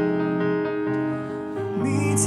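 Stage keyboard and cello playing slow, held chords, with a new low note coming in about one and a half seconds in.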